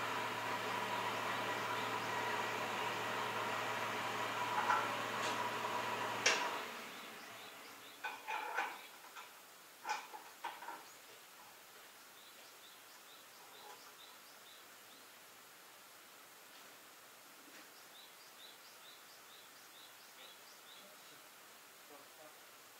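Yanmar YT333 tractor's diesel engine idling steadily, then shut off about six seconds in. A few metal clanks follow, then birds chirping in short repeated calls.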